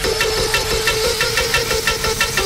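Hardtekk electronic dance music in a breakdown with the kick drum dropped out, leaving a fast, evenly repeating synth and percussion pattern of about six to seven strokes a second over a pulsing mid-pitched tone.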